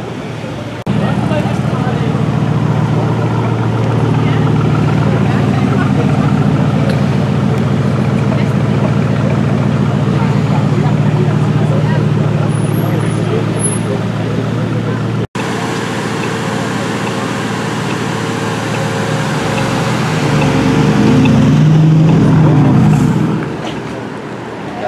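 Aston Martin DBX prototype's twin-turbo V8 running at low revs in slow traffic, a steady low note. After a cut about fifteen seconds in, the engine note gets louder and wavers near the end as the car comes past.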